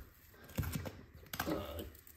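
Duct tape being peeled carefully off a laminate floor: a string of small, sharp crackles and clicks starting about half a second in.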